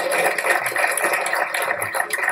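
Audience applauding, a steady run of many hands clapping.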